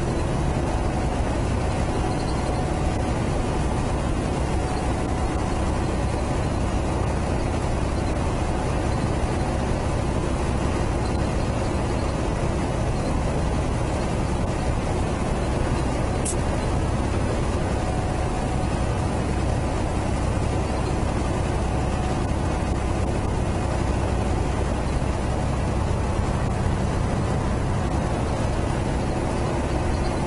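Semi-truck's diesel engine and tyre noise heard from inside the cab, a steady drone while cruising on a two-lane road.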